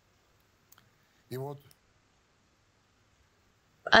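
A pause in a man's reading: near silence, with a faint click about two-thirds of a second in and a short voiced sound from him around a second and a half in, before his speech resumes at the very end.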